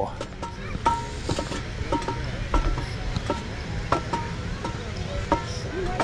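A Minelab Equinox metal detector giving short beeps at two different pitches, roughly twice a second and unevenly spaced. Footsteps knock on the wooden boardwalk boards at the same time.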